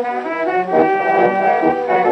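A brass band playing a Russian imperial march, with long held brass chords over lower notes.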